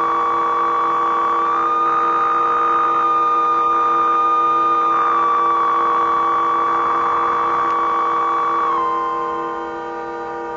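Live electronic music from a gestural instrument played with handheld controllers: a loud held synthesized tone over a steady low drone. The held tone steps up slightly about a second and a half in, slides back down around halfway, and drops away near the end, leaving the drone.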